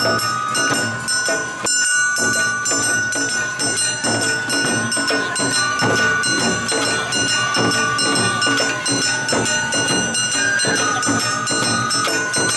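Awa odori festival band music (hayashi): a steady beat of drums and a clanging hand gong, with a high melody line holding long notes over it.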